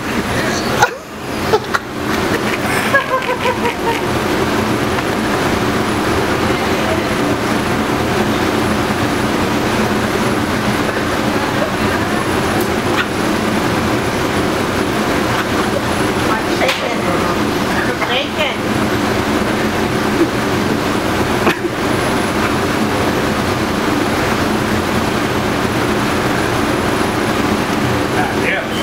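Steady, loud drone of a commercial kitchen exhaust hood fan running without a break, with a man's muffled vocal sounds over it.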